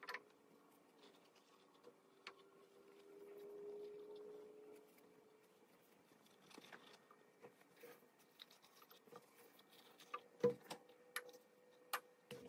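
Near silence with faint rustles and light taps from folded paper-towel strips being set into small glass jars, the sharpest taps about ten and a half seconds in.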